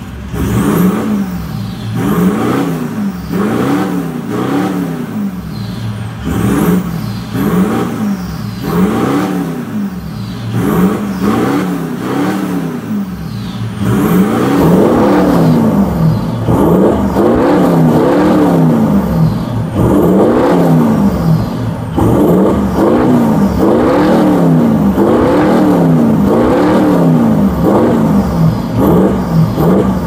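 2011 Toyota Land Cruiser V8 with an aftermarket catback exhaust, downpipes and air intake, revved in repeated short throttle blips while stationary. Each blip rises and falls back, about one every one and a half seconds. It gets louder from about halfway, heard close to the quad tailpipes.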